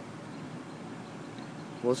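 Steady low background noise with no distinct events, then a man starts speaking near the end.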